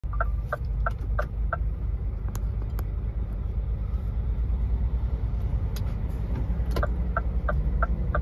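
Low, steady rumble of an idling diesel truck engine, with a run of short beeps, about three a second, near the start and again near the end. Another truck goes by close at the end.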